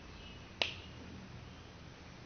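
A single sharp click about half a second in, over a low steady room hiss and hum.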